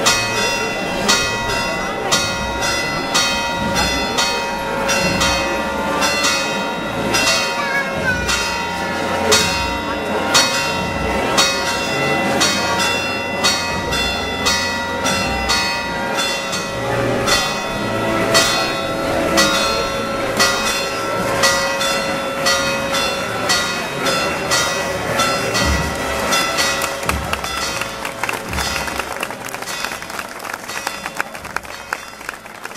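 Church bells pealing in a quick, festive ring: overlapping strokes with a loud stroke about once a second, each leaving a lingering ring, over a crowd's murmur. The peal fades near the end.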